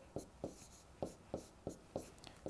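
Chalk writing on a chalkboard: about six short, faint strokes of chalk tapping and scraping across the board as a formula is written out.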